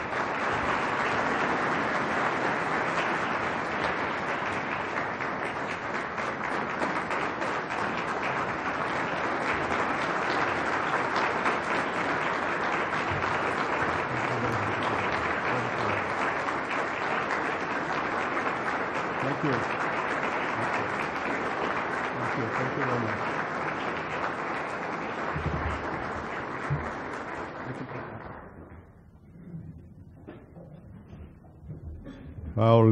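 A roomful of people applauding steadily, dying away near the end.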